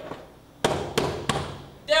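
Three heavy fist knocks on a hotel room door, about a third of a second apart, beginning past the middle. A man starts shouting a name at the very end.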